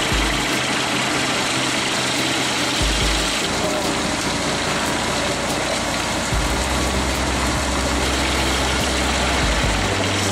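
Truck-mounted wood chipper running steadily as its crane grapple feeds brush into it, with a continuous rushing noise. A music bass line plays underneath, changing note every few seconds.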